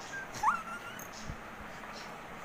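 A child's brief high-pitched squeal that rises in pitch, about half a second in, followed by a soft bump on the bed.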